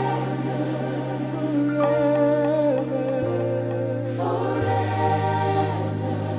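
Contemporary gospel recording: a choir holds long notes over sustained keyboard chords and bass, with the bass stepping to a new note twice.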